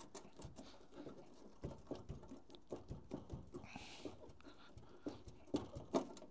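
Faint, scattered small clicks and creaks of pliers gripping a tab of sheet-steel panel at the edge of a punched hole and working it back and forth to break it off. A brief hiss comes about four seconds in, and a couple of slightly louder clicks come near the end.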